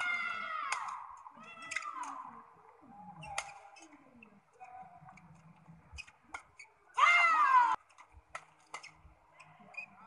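Badminton rally: sharp racket strikes on the shuttlecock, with a loud high-pitched shout, falling in pitch, about seven seconds in. Shorter voice sounds come in the first couple of seconds.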